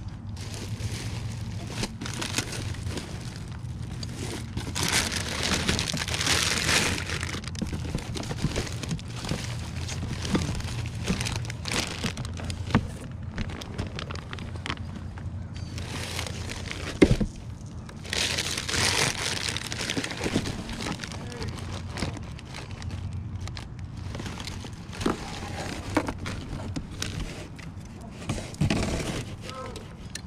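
Plastic bags and wrapping crinkling and rustling as items are handled and shifted in a cardboard box, with louder crinkling twice and a few sharp knocks, the loudest about two-thirds of the way through.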